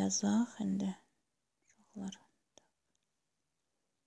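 Speech only: a voice talks for about the first second, then a short quiet murmur about two seconds in, with silence between and after.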